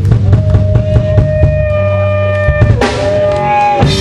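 Live rock band playing: a drum kit beats steadily under held guitar notes. About two and a half seconds in the drums drop out, leaving sustained notes that bend in pitch.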